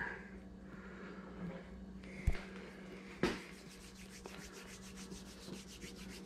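Faint close-up rubbing of hands and a sculpting tool working epoxy over a deer mount's hide, in faint repeated strokes, with two light knocks about two and three seconds in, over a steady low hum.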